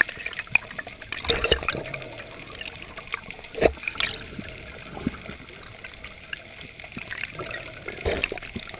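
Muffled underwater water noise picked up through an action-camera housing, with scattered bubbling, small clicks, and one sharper knock about three and a half seconds in.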